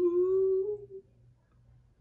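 A woman humming one long note that slides upward in pitch and stops under a second in.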